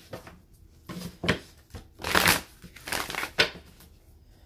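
A tarot deck being shuffled by hand on a table, in about five short bursts of rustling card noise with quiet gaps between.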